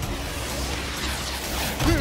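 Cartoon sound effect of a rocket-powered fist flying off: a steady hissing whoosh of rocket thrust.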